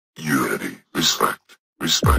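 Vocal sample in a psytrance track, with the beat dropped out: three short bursts of a low voice separated by brief silences, the last starting near the end.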